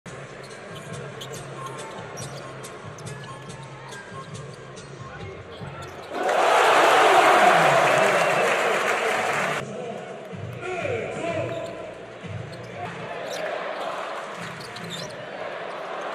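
Live basketball game sound in an arena hall: a ball bouncing and sharp squeaks and clicks on the court under a commentator's voice, then about six seconds in a sudden loud burst of crowd noise lasting about three seconds that cuts off abruptly.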